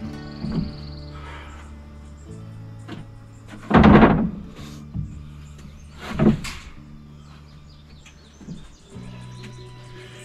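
Background music with held chords, over which come a few heavy thuds on wooden framing: a loud one about four seconds in, another about six seconds in, and lighter knocks before and after.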